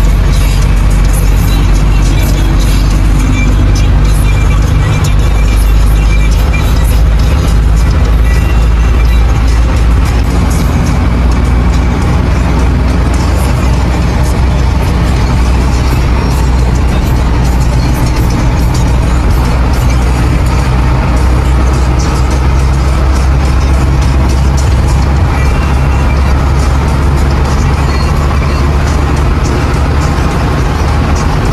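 Steady low drone of a bus engine and road noise inside the cabin while it drives on a wet highway, with music playing over it.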